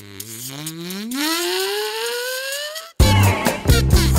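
Electro-swing music at a break. A single pitched tone starts low and glides steadily upward for about three seconds over a rising hiss, then stops. After a brief gap the full beat comes back in.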